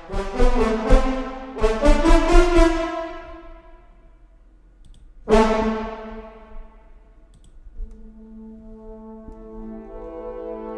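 Sampled brass ensemble, Native Instruments' Symphony Series Brass Ensemble played in Kontakt. It plays a run of short staccato chords for about three seconds, then a single loud chord about five seconds in that dies away. Near the end a held chord swells slowly louder.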